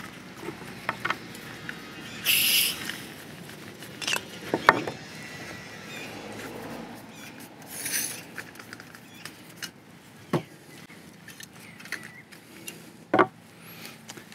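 Jetboil Minimo stove parts being handled and taken apart: scattered clicks and knocks as the burner comes off the gas canister, the plastic canister stand is removed and the metal pot supports are folded, with two short hisses.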